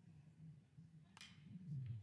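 Faint, low ballpark background with one sharp crack about a second in: a bat hitting a pitched ball.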